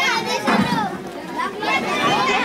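Children's voices and crowd chatter, high-pitched voices calling and talking over one another.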